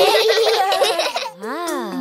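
Several cartoon children's voices laughing and giggling together. Near the end comes a short pitched sound that swoops up and back down.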